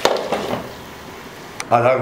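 Glass pan lid set down onto a frying pan with a sharp clink and a few small rattles, then a soft steady sizzle from the masala chicken cooking under the lid.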